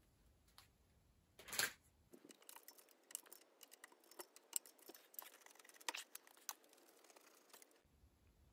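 Hands handling bicycle parts during disassembly: a short rubbing burst about a second and a half in, then many faint, irregular clicks and ticks of metal parts and cable being worked.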